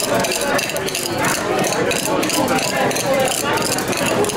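Coffee beans being crushed with a muddler in a metal shaker tin: a run of short knocks and rattles. Voices of people talking in the bar run underneath.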